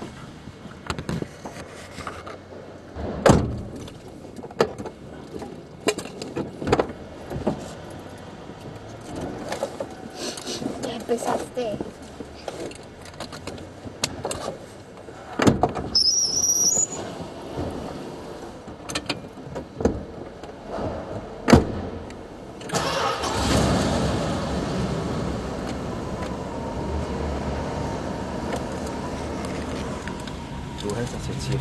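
Scattered clicks and knocks, with a brief rising high squeak about halfway through. About three-quarters of the way in, a 1977 Plymouth Fury's 318 cubic-inch V8 starts and settles into a steady idle.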